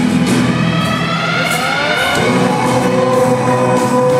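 A rock band playing live, heard from the audience in a large hall. About a second in, a melody line slides upward, then settles into a held note.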